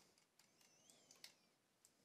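Near silence: room tone with a few faint computer-mouse clicks.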